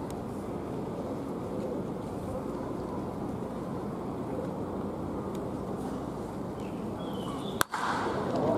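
Steady outdoor background noise with no distinct events, broken by one sharp crack near the end.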